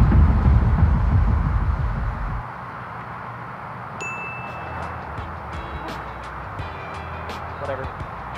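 A low rumble for the first two seconds. About four seconds in, the old thin putter strikes the golf ball with a sharp click and a clear ringing ding. A run of light tinkling clicks follows.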